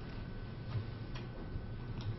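Two faint, short clicks, about three quarters of a second and a second and a quarter in, over a steady low hum and a thin steady high whine of room and sound-system noise.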